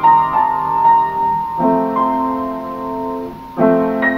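Upright piano played slowly: a long held melody note over sustained chords, with a new chord coming in about a second and a half in and another struck just before the end.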